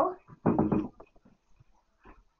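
A child's voice: one short, loud call without clear words, about half a second in.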